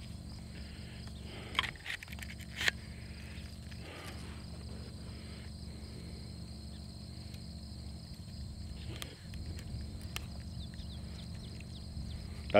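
Crickets chirring steadily in the grass over a low steady rumble. A few short sharp clicks come in the first three seconds and again around nine seconds, from an AK-pattern bayonet being handled and put into its sheath.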